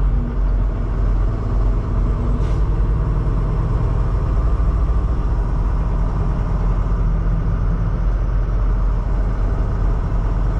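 Semi truck's diesel engine and road noise heard from inside the cab: a steady low rumble as the truck drives along.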